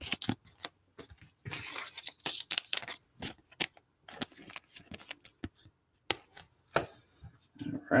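Trading cards being handled and slid into plastic sleeves and rigid card holders: a scatter of sharp plastic clicks and taps with short rustles of sliding plastic.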